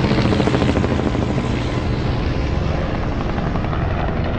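Two military helicopters flying past, with a steady, rapid chop from their rotor blades.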